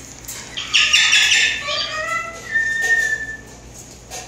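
Slender-billed corella giving a loud, harsh squawk about a second in, followed by a few shorter whistled notes, one of them held briefly.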